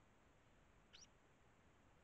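One short, rising chirp from a Eurasian tree sparrow about a second in, against near silence.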